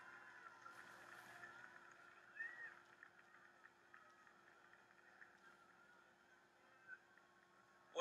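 Near silence: faint room tone between stretches of commentary, with one faint brief sound about two and a half seconds in.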